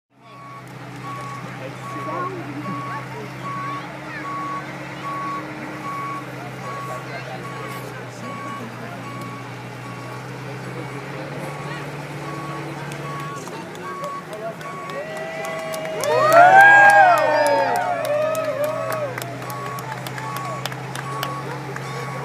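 Aircraft tow tractor moving slowly with its warning beeper sounding a steady repeating single-pitch beep, about once a second, over the low hum of its engine. A loud voice calls out about two-thirds of the way through.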